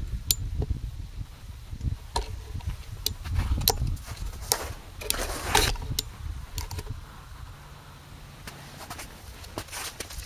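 Handling noise from a camera being positioned: irregular clicks, knocks and bumps over a low rumble of wind on the microphone, settling quieter over the last few seconds.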